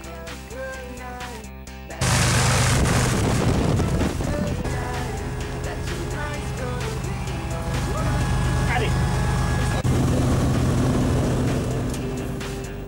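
Music, then about two seconds in a loud, steady drone of a light aircraft's engine and propeller heard from inside the cabin, with music still faintly under it.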